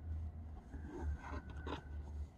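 Faint handling noise as a plastic action figure is picked up off a cutting mat: a few light taps and rubbing over a low rumble.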